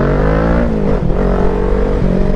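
Kawasaki Ninja 650's parallel-twin engine pulling under acceleration, its pitch rising, then dropping sharply about a second in as the rider shifts up a gear, and holding steady after.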